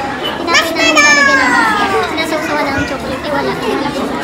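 A young child's high voice gives a brief rising sound, then a long call that falls in pitch about a second in, over the busy chatter of a crowded dining hall.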